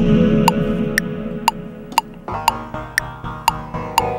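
Access Virus synthesizer playing over the Korg Kronos sequencer's metronome clicking twice a second (120 bpm). A low sustained synth sound fades away, and about two seconds in a new, brighter synth sound takes over, as a recorded program change switches the patch.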